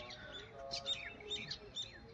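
Small birds chirping: a quick, faint run of short high calls, many of them sliding downward.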